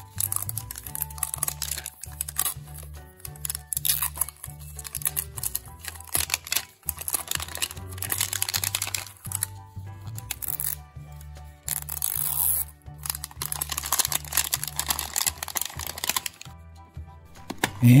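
Crinkling and tearing of a capsule ball's printed wrapper as it is peeled off by hand, over background music with a steady, repeating bass line.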